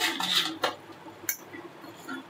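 Kitchen handling sounds: a short clattering rustle right at the start, then two light clicks about half a second apart.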